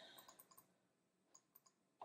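Near silence in a pause in the talk, with a few faint, tiny clicks.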